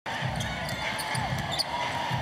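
A basketball being dribbled on a hardwood court, its low bounces coming about every half second over steady arena background noise.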